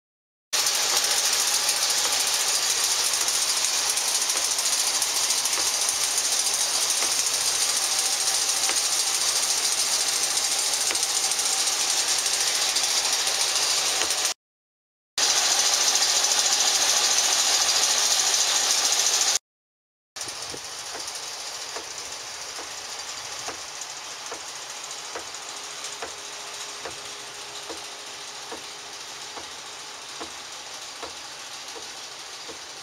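An engine running steadily, with no clear rhythm, cut off twice by brief dropouts; after the second break it is quieter, with faint ticks.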